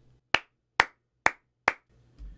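Four hand claps, evenly spaced about half a second apart, made as sync markers for lining audio up with video.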